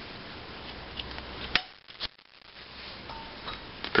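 Center punch marking the center of a screw clamped in a vise: two sharp metallic clicks about half a second apart near the middle, the first the louder.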